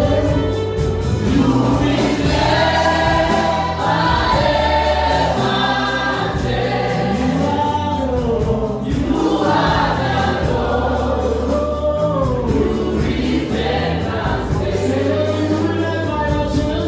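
A church praise team of women and men singing a gospel worship song together into microphones, over a live band with a steady bass line and a drum beat.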